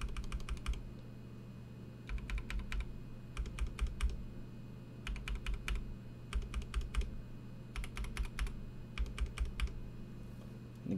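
A Gateron Yellow linear mechanical keyboard switch, lubed with Krytox 205g0, pressed repeatedly on one key: short runs of quick clacking keystrokes, each run under a second long, with brief pauses between them. Each press is smooth through the middle of the travel but a bit louder at the ends, on the way down and on the stem's return.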